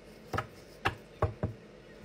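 Four short, sharp taps of a tarot card deck being handled and set against a tabletop, the last two close together.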